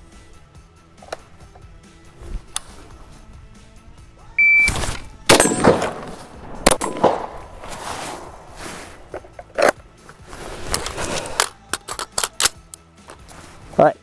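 A shot timer beeps, then a single AR-style carbine shot follows just under a second later, and a single pistol shot about a second and a half after that, once the shooter has transitioned to the handgun. The timer reads 2.29 seconds from beep to last shot. Later come a scattered series of sharp clicks and knocks.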